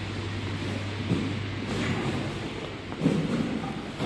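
Background noise while walking through a covered passage: a steady low hum that stops about halfway through, with a few soft knocks.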